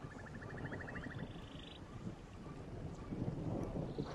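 Faint background ambience: a low rumble with two short, rapid high trills in the first two seconds and a few small chirps.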